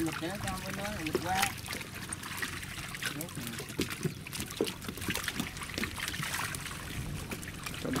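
Water trickling and splashing, with many small scattered splashes and slaps from fish thrashing in a net in shallow water, over a low steady hum.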